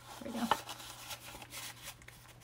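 Paper rustling and sliding: a card-stock note card being tucked into a paper envelope pocket and the flap folded shut, with a few small clicks.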